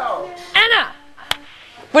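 A short voice with a falling pitch, then a single sharp snap a little past the middle.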